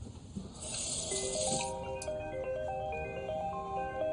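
Smartphone ringtone: a melody of short stepped notes that starts about a second in and keeps repeating. Just before it, a brief rush of water from a bathroom tap.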